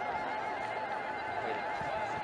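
Women in a crowd ululating: a high, evenly wavering trill held without a break.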